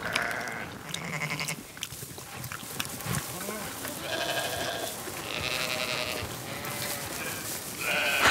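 Sheep and goats bleating, several separate calls spread over a few seconds.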